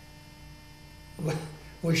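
Steady electrical mains hum, a set of fixed tones under the recording, through a pause. A man's voice starts a little past a second in.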